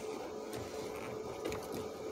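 Quiet handling of a rubber sunroof drain hose being worked onto its fitting under a car's dash, with one soft knock about one and a half seconds in. A faint steady hum runs underneath.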